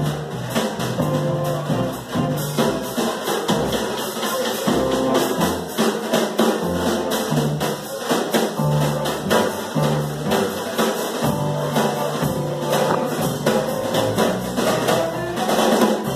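A small live band playing an instrumental passage led by a drum kit: rapid snare and cymbal strokes over sustained upright double bass notes.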